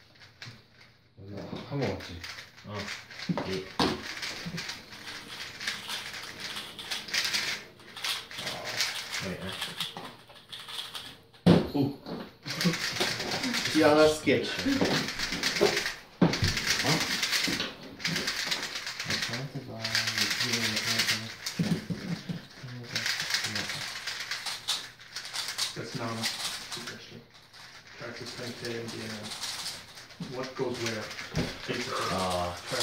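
Indistinct voices talking in a small room, with the fast plastic clicking of 3x3 speed cubes being turned.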